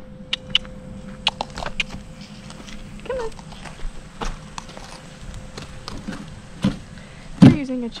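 Scattered clicks and knocks as a white plastic lawn chair is shifted on the dirt and horse tack is handled, with a loud knock and brief squeak from the chair near the end.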